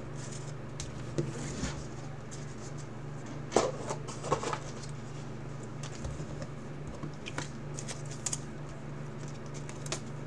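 Bowman's Best baseball cards and a wrapped pack being handled: scattered short rustles and card flicks, a few louder ones in the middle, over a steady low hum.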